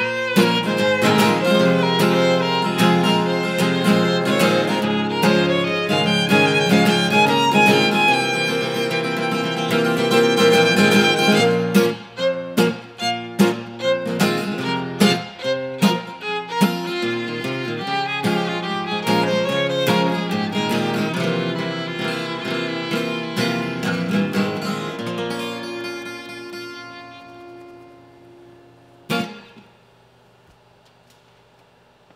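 Acoustic guitar and fiddle playing an instrumental passage together, the guitar strummed under the bowed fiddle melody. The music fades away over the last few seconds, with one last short stroke near the end.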